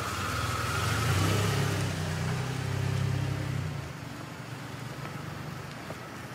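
A car engine running at low revs with a low rumble that grows louder about a second in, then fades out about four seconds in as the car drives off.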